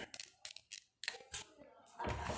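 Faint short clicks and scratchy ticks, about half a dozen, spaced irregularly over two seconds.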